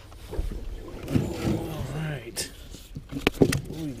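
Fishing gear being handled in a small boat: a few sharp knocks, the loudest a close pair about three seconds in, over a low rumble of handling noise on the camera. A voice is heard briefly in the middle.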